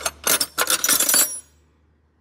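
Steel spanners clinking and rattling against each other in a metal toolbox drawer as they are rummaged through, stopping about a second and a half in.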